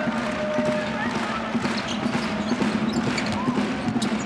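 Live basketball court sound: a ball bouncing on the hardwood and short sneaker squeaks as players run in transition, over a steady low arena hum and faint background music.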